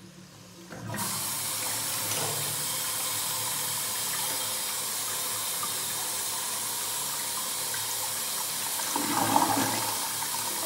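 Early-1960s Crane Sanuro urinal flushed by its Sloan foot-pedal flush valve: the rush of water through the valve and bowl starts suddenly about a second in and runs steadily on, swelling briefly louder near the end. The valve is set to a weak flush, too weak to clear the bowl in one go.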